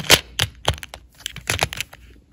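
Quick, irregular run of sharp plastic clicks and clacks as a clear plastic compartment storage box is handled, with long acrylic fingernails tapping against its lids.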